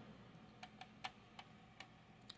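Near silence with about six faint, irregular light clicks from a plastic scale model being handled and turned in the hands.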